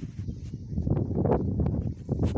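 Irregular rumbling and rustling noise close on the phone's microphone, with scattered small knocks.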